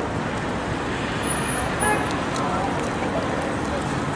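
City street ambience: steady road-traffic noise with the voices of people in the crowd, and a short high-pitched sound about two seconds in.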